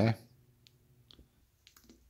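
The end of a spoken word, then near quiet with a few faint, scattered clicks.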